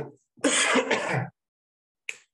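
A man clearing his throat, a rough sound lasting about a second.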